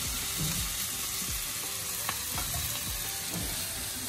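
Hot oil and vegetables sizzling in a kadai as boiled noodles are tipped in for chow mein: a steady frying hiss, with a few light clicks about two seconds in.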